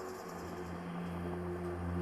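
Faint low, sustained background-music drone that swells slightly about a second in, over the steady hiss of an old reel-to-reel tape recording.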